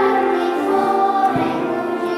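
Children's choir singing in a church, with held notes that move from one pitch to the next.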